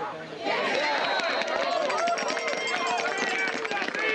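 Many voices shouting and cheering at once from spectators and sideline players at a lacrosse game, rising suddenly about half a second in and staying loud, with scattered sharp clicks among them.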